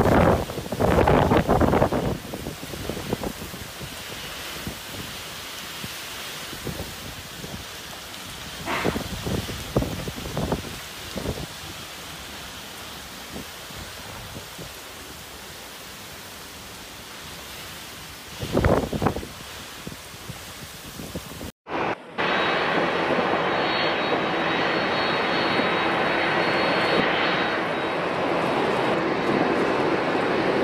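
Typhoon wind and heavy rain, a steady rush that surges loudly in gusts about a second in, around nine seconds and again around nineteen seconds. After an abrupt cut a little past twenty seconds, a louder steady roar with a thin high whine takes over.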